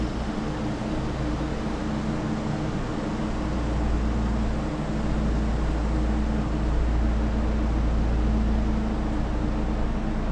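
Proton Iriz 1.6-litre four-cylinder petrol engine idling steadily, heard from outside the car as a low rumble with a steady hum.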